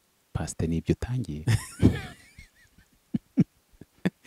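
A man talking, then breaking into a brief laugh about a second and a half in, after which it goes quiet apart from a few faint clicks.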